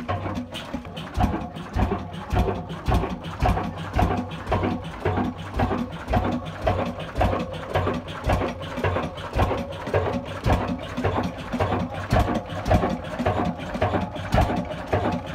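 Old stationary diesel engine with a heavy flywheel running steadily, belt-driving a flour mill. It keeps a slow, even beat of somewhat under two thuds a second.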